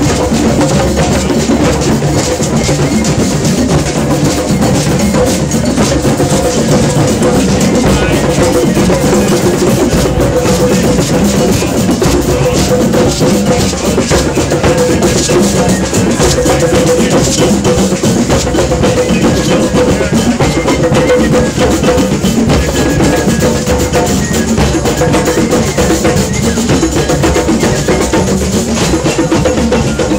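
A drum circle of many hand drums, djembes and congas, played together in a dense, continuous rhythm that does not let up.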